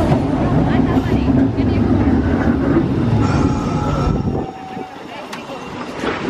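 Green Perley Thomas St. Charles streetcar rumbling along the rails as it pulls up to the stop. A faint high squeal comes in near the middle. The rumble drops off about four and a half seconds in as the car comes alongside.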